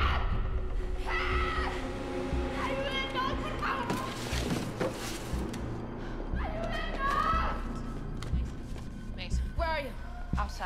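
Film soundtrack mix: a low music score under three bursts of shouting or crying-out voices, with scattered thuds in the middle.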